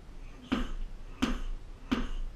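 Sledgehammer striking a rubber car tyre mounted on a weighted boxing stand: three sharp blows, evenly spaced, about one every 0.7 seconds.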